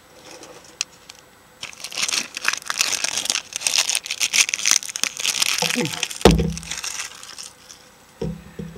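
Clear plastic wrapper crinkling and tearing as it is pulled off a plastic Easter egg, starting about a second and a half in and running until near the end, with a single thump a little after six seconds in.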